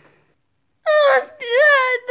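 A child's voice wailing in a high, wavering pitch, starting about a second in after a near-silent moment.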